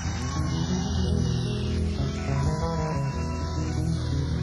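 Live rock band playing an instrumental vamp, with electric guitar, bass and keyboards.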